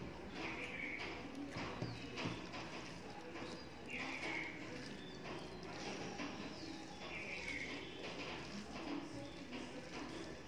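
Wet eating sounds: cooked rice squished and mixed by hand with dal and curry on a steel plate, with chewing and mouth smacks, as a run of soft irregular clicks.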